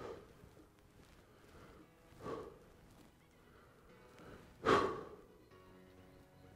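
Faint background music, with three short breathy exhalations from a disc golfer throwing: one at the start, one about two seconds in, and the loudest near the end.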